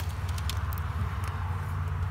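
Steady low rumble of vehicle engines, with one sharp click right at the start.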